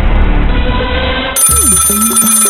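Title music cut off abruptly about a second and a half in by a mobile phone ringtone: a steady high tone over a low tune with sliding notes.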